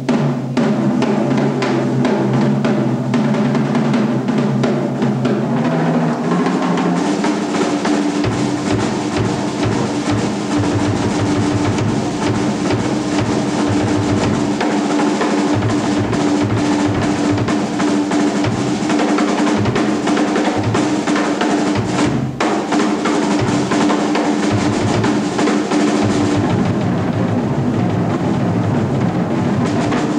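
Drum kit solo: fast rolls around the tom-toms, then from about eight seconds in, rapid bass drum strokes under a continuous roll, with cymbals ringing throughout.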